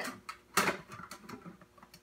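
Thin sheet-metal duct reducer being pushed and worked onto a metal pipe end. There is one sharp metallic knock about half a second in, then light scraping and ticking as the metal is bent to fit.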